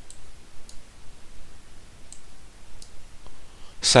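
Computer mouse clicking: a handful of faint, sharp clicks spread over a few seconds as a link arrow is drawn between two variables in the modelling software.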